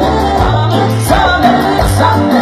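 Live band playing Latin dance music, with a lead singer over a steady bass line that changes note about every half second.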